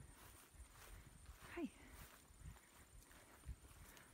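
Near silence with faint, scattered soft thumps, and one quiet spoken "hi" about one and a half seconds in.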